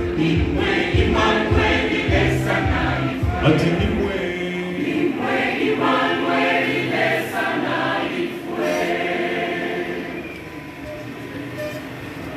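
Large church choir singing, over a steady low beat for the first four seconds, after which the voices carry on alone; the singing grows quieter about ten seconds in.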